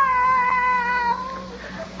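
A child's voice, done by an adult comedienne, in one long, high, drawn-out wail that holds its pitch, sinks slightly and fades out a little over a second in: the child's crying-out that the father dreads.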